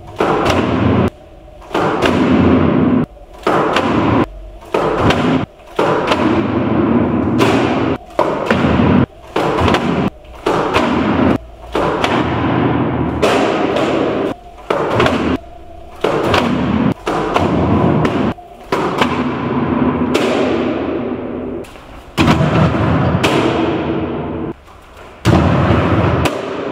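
Heavy electric mini skateboard (Lou Board 3.0) rolling on a concrete floor and landing on and sliding along wooden obstacles with repeated thuds. The sound comes in short stretches that cut off abruptly, one after another.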